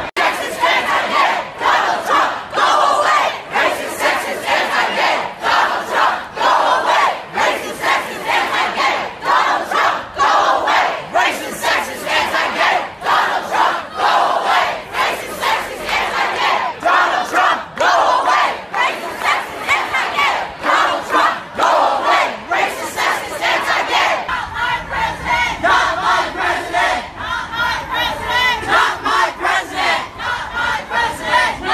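A large crowd of protesters chanting and shouting anti-Trump slogans in unison, the loudness rising and falling with each chanted phrase.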